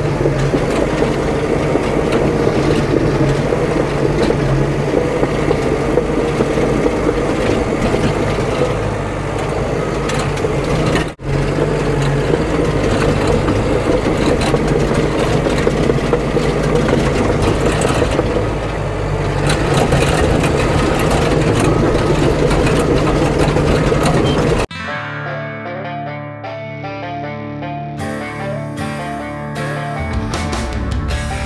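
Diesel engine of a CAT D5 bulldozer running under load as it pushes dirt across hard ground, with a brief dropout about 11 seconds in. Near the end it cuts off suddenly and background music takes over.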